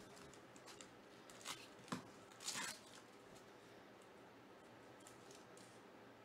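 A trading-card pack wrapper being torn open by hand: a short rip about a second and a half in, a sharp click just before two seconds, and a longer rip around two and a half seconds, the loudest sound. Faint crinkles and ticks of handling follow.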